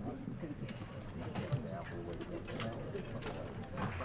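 Indistinct murmur of several voices with shuffling and scattered clicks as people move through a room.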